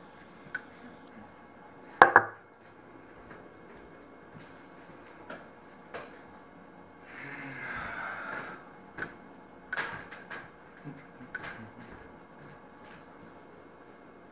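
Scattered knocks and clicks of things being handled in a small room, the loudest a sharp knock about two seconds in. A rustle of about a second and a half comes around the middle, and a few more clicks follow.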